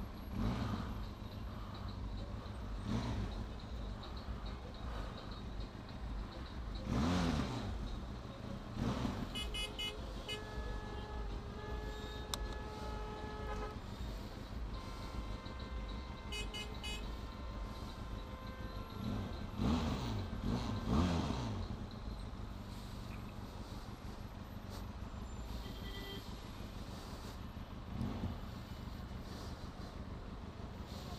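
Benelli TRK 502X parallel-twin motorcycle engine idling steadily in stopped traffic. Car horns sound: a held honk from about ten to fourteen seconds in, then another around fifteen to seventeen seconds. Nearby vehicles pass, loudest around seven seconds and again around twenty seconds in.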